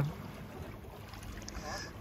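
Faint seaside ambience: light wind on the microphone with small waves lapping at a rocky shore.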